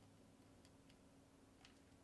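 Near silence: room tone with a low hum and a couple of faint, short clicks.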